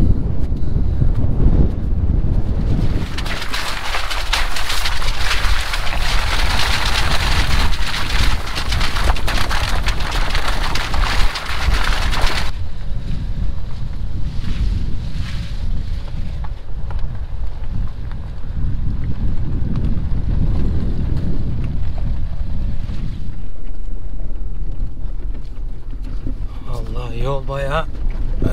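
Wind rushing over the microphone, a loud steady hiss that cuts off suddenly about twelve seconds in. After that, a car's low engine and tyre rumble with a faint steady hum as it drives down a bumpy dirt track.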